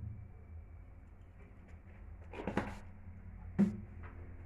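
Kitchen items being handled on a worktop: a short run of clicks a bit past halfway and one sharp knock near the end, over a low steady hum.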